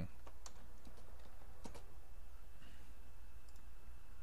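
A handful of scattered computer keyboard keystrokes and clicks as code is typed and saved, over a steady low hum.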